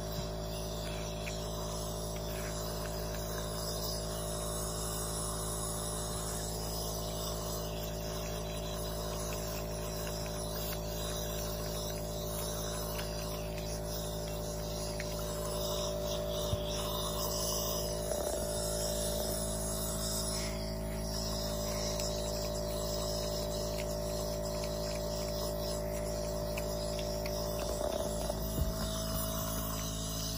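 Compressor nebulizer humming steadily, a constant buzzing machine drone, while it delivers an aerosol treatment through a mask. There is a small click about halfway through, and a couple of brief soft sounds near the middle and near the end.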